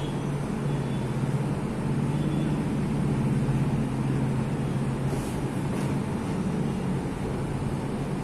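A steady low hum of background room noise, with faint strokes of a marker writing on a whiteboard.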